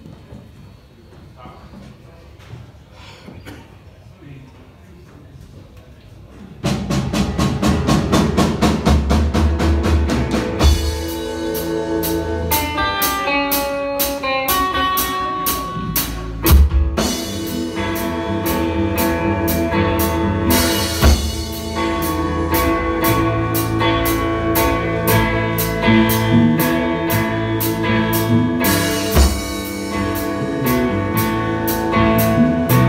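A live rock band with drum kit, electric guitar and bass is quiet at first, with only faint stage noise, then comes in together suddenly about seven seconds in and plays on with a steady cymbal beat.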